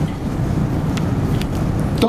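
Low, steady rumbling background noise, with two faint clicks about a second in.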